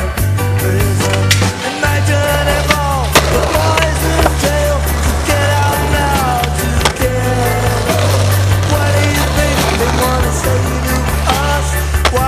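Rock music with a steady drum beat and bass line, with skateboard sounds mixed in under it.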